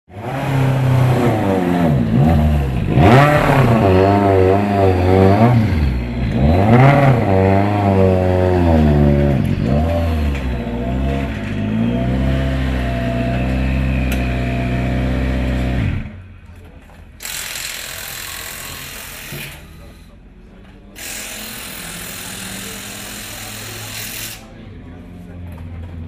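Citroën C4 WRC rally car's turbocharged four-cylinder engine being warmed up, revved in repeated blips that rise and fall in pitch. It stops about two-thirds of the way through, and two long bursts of hissing follow, each a few seconds long, starting and stopping sharply.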